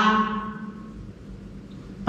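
The end of a woman's drawn-out spoken vowel fading away in the room's echo, then a pause of quiet room tone.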